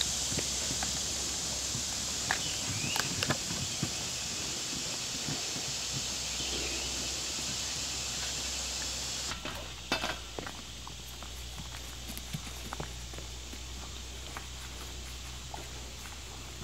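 Gray wolves licking and chewing ice cream from a cup on the ground: scattered small wet clicks, crackles and paw steps. Under them a steady high hiss, which drops away abruptly about nine seconds in.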